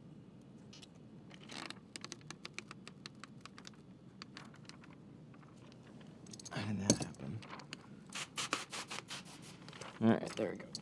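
Window-tint film being worked on glass with a squeegee and hands: a run of quick, scratchy clicks and rubs that grows busier toward the end, with a heavier handling bump about seven seconds in.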